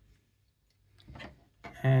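Near silence, with a faint short sound about a second in, then a man's voice starting near the end.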